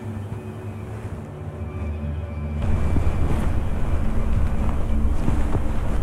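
Wind buffeting the microphone: a low rumble that grows louder a little under halfway through.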